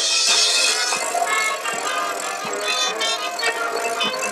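High school marching band playing a loud passage of its field show: brass and winds sounding together over a steady pulse of percussion hits. A bright, hissy wash is loudest in the first second, then the full band carries on.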